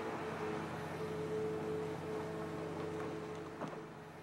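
Diesel engine of a Caterpillar earthmover running steadily at a constant pitch, easing slightly near the end.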